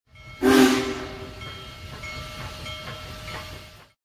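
A short train horn blast, two notes sounding together, followed by a few seconds of steady train running noise with faint clicks that fades out just before the end.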